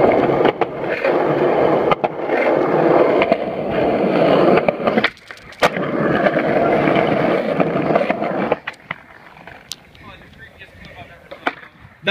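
Skateboard wheels rolling over rough concrete, a loud steady rumble. About five seconds in it breaks off briefly between two sharp clacks, the board popped off the ground and landing, then rolls on and stops about three seconds later, leaving only a few faint knocks.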